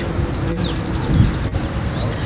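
Small birds chirping, with quick high notes running into rapid trills, over a steady low background rumble.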